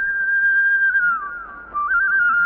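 A whistled melody opening a film song. One clear high line holds a long note, glides down and fades just after a second in, and a new phrase starts near the end.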